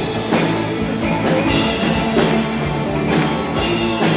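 Live rock band playing: a drum kit with sharp hits every second or so over electric guitars.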